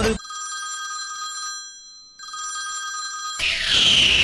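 Electronic phone ringtone: a steady chord of several tones rings twice with a short break between. About three and a half seconds in, a loud whoosh sound effect falling in pitch cuts in over it.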